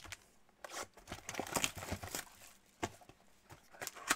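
Trading-card packaging being handled and opened: crinkling and tearing of a foil pack wrapper and a cardboard card box. The rustling is densest about a second in and is followed by a few sharp clicks.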